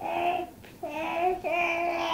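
A toddler's high voice making three drawn-out, sing-song sounds at a fairly even pitch.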